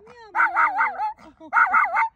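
Small long-haired Chihuahua howling with her snout raised, in two wavering bursts of about half a second each.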